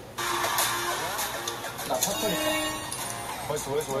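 Background music with people speaking Korean over it, from a variety-show clip.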